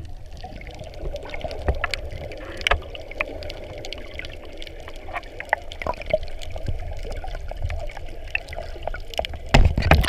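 Underwater sound picked up by a submerged camera in the sea: a steady muffled rumble of water with scattered faint clicks. Near the end, a loud splash as the camera comes up to the surface.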